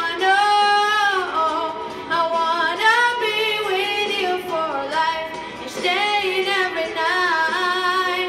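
A girl singing a song into a handheld karaoke microphone, holding long notes that bend up and down in pitch.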